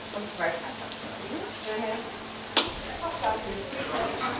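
Schmalznudel dough rings sizzling as they deep-fry in hot oil, a steady crackling hiss. A single sharp click sounds about two and a half seconds in.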